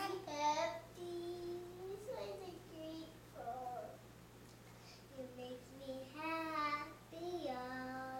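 A young girl singing a slow tune in short phrases, with long held notes and brief pauses between them.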